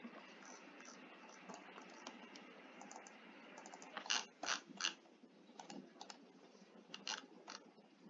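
Faint, scattered clicking of a computer keyboard and mouse over a low background hiss. A quick run of three louder clicks comes about four seconds in, and a few more follow near the end.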